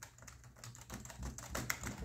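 Keys being typed on a wireless computer keyboard: an irregular run of soft, quick clicks.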